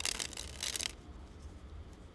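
A deck of playing cards shuffled in the hands: two short bursts of riffling card noise in the first second.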